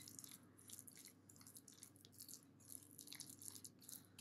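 Faint, soft squishing and scraping of a metal spoon stirring mashed roasted eggplant and ground walnuts in a glass bowl, over a low steady hum.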